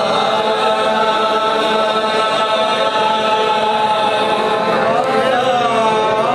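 Qawwali singing: male voices hold long, drawn-out notes together, the pitch sliding and bending about five seconds in.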